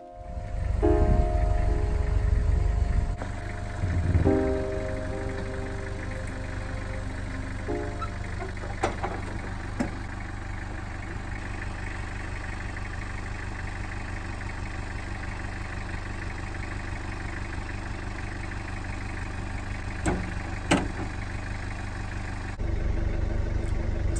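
Engine of an open safari vehicle, loudest in the first three seconds, then running on at a steady idle, with a few sharp clicks around nine and twenty-one seconds in.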